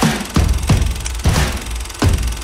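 Music with a heavy beat of deep, punchy drum hits over a bass rumble, about five hits in two seconds.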